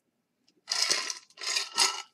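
A person drinking from a stainless steel tumbler of iced coffee: three short hissy sips and slurps, the first starting just over half a second in.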